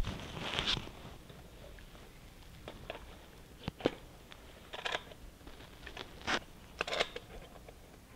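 Handling noise from a carbon-fiber Jaco robotic arm being fitted onto its mounting post: a few sharp clicks and knocks with short scraping rustles in between.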